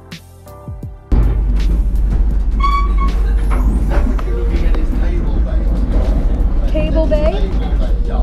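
Electronic music, then about a second in a sudden cut to the loud, steady rumble and rush of a moving passenger train heard at a carriage window. Voices come in briefly near the end.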